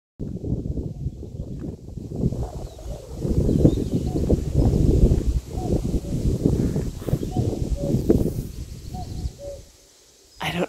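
Wind buffeting the microphone in a loud, uneven rumble. In the second half a common cuckoo calls faintly a few times, each call two notes with the second lower.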